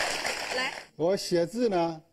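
Speech: a voice talking, with a hissy noise under the first second.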